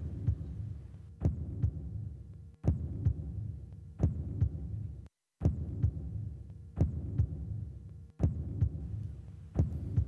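Heartbeat sound effect: a low double thump about every second and a half over a steady low hum, the cue that marks the women's time to consider the male guest.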